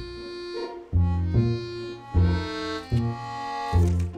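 Background music: a light tune of held, reedy notes over a bass note that comes back at a regular pace, changing chord every second or so.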